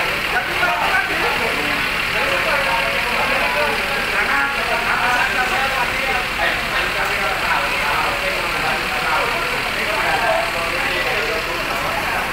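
Indistinct talk from several people over the steady idle of a coach's diesel engine.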